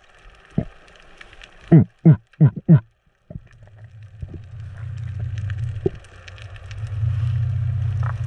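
Underwater: a diver grunting four times in quick succession to draw fish in, over faint scattered crackling. After a short break, a steady low hum comes in and grows louder toward the end.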